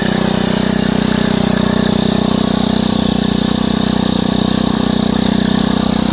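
Gas string trimmer engine running steadily.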